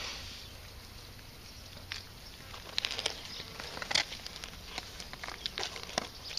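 Light rustling with scattered sharp clicks and ticks, clustered about two, three and four seconds in, from hand and turtle movement on dry soil, grass and a plastic feeding tray.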